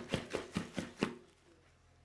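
A quick run of light, sharp clicks and taps, about six in the first second, then stopping.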